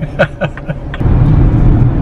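Engine and road noise heard inside a moving vehicle's cabin: a steady low rumble that comes in suddenly about halfway through.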